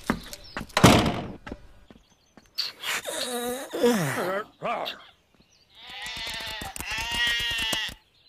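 Cartoon sheep bleating in two bouts, the first with bending pitch a few seconds in and a longer one near the end, after some knocks and clatter at the start.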